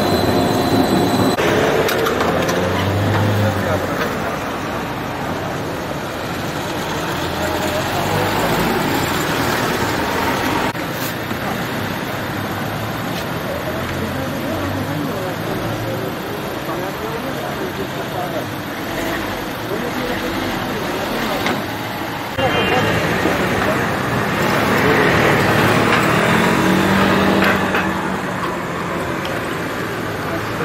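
Busy street ambience: steady road traffic with people talking nearby. The sound steps up abruptly about three-quarters of the way through.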